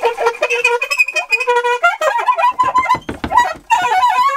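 Saxophone playing a phrase of short notes mixed with a few held ones, growing quicker and busier in the second half.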